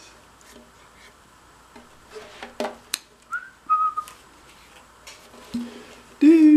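Handling noises from a concert ukulele being turned over and brought into playing position: a few sharp knocks and taps about two to three seconds in. A short whistled note, rising and then held, follows about halfway through.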